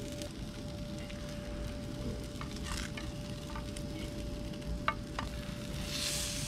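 Amberjack and permit fillets sizzling over charcoal on a kettle grill, with two sharp clicks about five seconds in.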